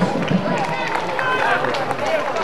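Players' and spectators' voices shouting and calling across an outdoor football pitch during play, over a low background of crowd noise.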